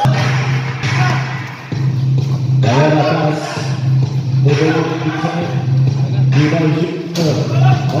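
Background music with a voice over it and a steady low note underneath.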